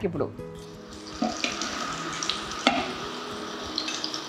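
Mirchi bajji (batter-coated chilli fritters) deep-frying in hot oil in a kadai: a steady sizzle, with a few light clinks of a metal slotted ladle against the pan.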